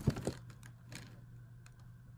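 A cluster of quick, light clicks and taps in the first half-second, then a few faint scattered ticks, from a makeup brush and a cardboard eyeshadow palette being handled. A faint low hum runs underneath.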